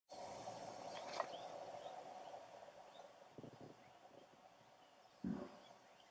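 Faint outdoor ambience with a few short, high bird chirps, a sharp click about a second in, and two low thuds, the louder one near the end. A faint steady hum fades out over the first few seconds.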